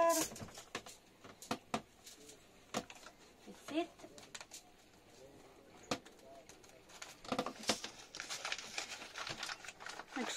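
Paper flour bag and aluminium foil rustling and crinkling as the bag is handled and flour shaken out, with scattered light taps and clicks; the rustling is heaviest about seven to nine seconds in.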